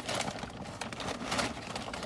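Paper fast-food bag rustling and crinkling as a hand rummages through it.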